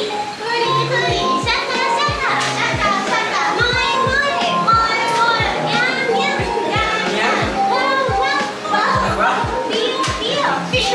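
Upbeat song with high-pitched vocals over a steady kick-drum beat.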